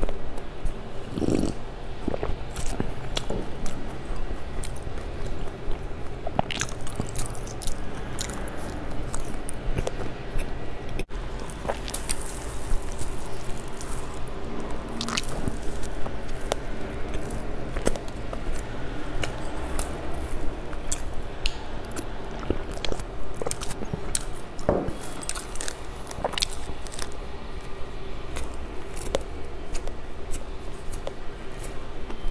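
Close-miked eating sounds: a sip and swallow from a mug near the start, then repeated bites and chewing of a soft bread roll, with many small wet mouth clicks.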